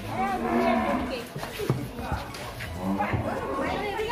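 Cows mooing: one call held for about a second at the start, and a shorter moo about three seconds in.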